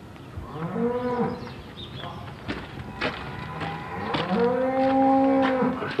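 Cattle mooing twice: a short call about half a second in and a longer, held call after about four seconds, which is the loudest sound. Between the two calls come a few sharp knocks.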